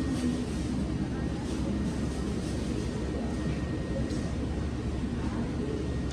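Steady low background rumble with a faint, thin high tone running through it: the even room noise of a shop.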